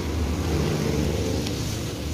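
A steady low mechanical hum, with no distinct clicks or knocks.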